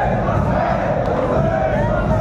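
A large crowd of men chanting a marsiya together in unison, many voices held loudly on one sustained line.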